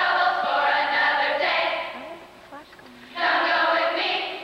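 A choir of young women singing together. One phrase ends about two seconds in, and after a short pause the next phrase comes in.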